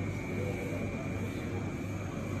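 Steady machinery drone: a constant low hum with a thin high whine over it, unchanging throughout.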